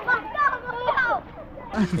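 Children's high-pitched voices calling out at play during the first second or so. Then a deeper speaking voice starts near the end.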